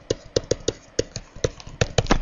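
A pen writing a word by hand: an irregular run of about ten short, sharp taps and clicks as the pen strokes land on the writing surface.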